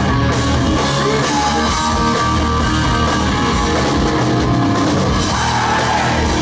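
Live hard rock band playing at full volume: distorted electric guitars, bass and a drum kit in a steady driving groove.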